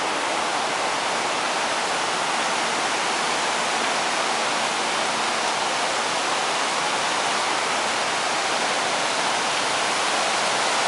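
Steady rushing of a waterfall: an unbroken, even hiss of falling water that holds the same level throughout.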